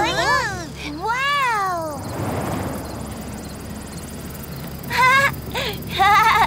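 Cartoon character's voice giving two long wordless calls that each rise and fall in pitch, then a quieter stretch of hiss, and a short voiced sound about five seconds in.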